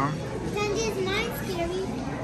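Indistinct speech from a high-pitched voice, typical of a child, over background chatter.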